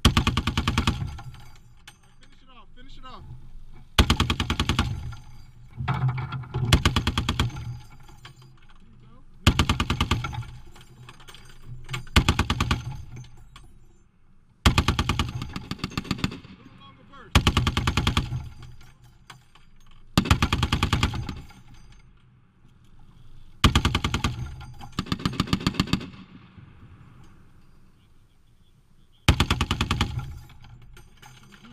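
Browning M2 .50 caliber heavy machine gun firing short bursts: about a dozen bursts of roughly a second each, the individual shots distinct at several a second, with pauses of a second or two between bursts.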